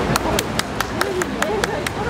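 A rapid, even clicking, about five clicks a second, over voices.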